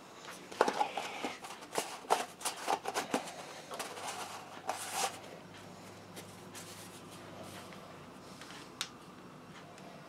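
Clicks and rattles of a plastic static grass applicator cup being handled and refilled with static grass. The handling is busy for about the first five seconds, then it goes quiet apart from one sharp click near the end.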